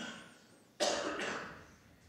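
A man coughing twice, the second cough louder and longer, a little under a second in.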